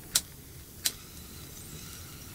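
A handheld cigarette lighter being struck twice: two short, sharp clicks about two-thirds of a second apart.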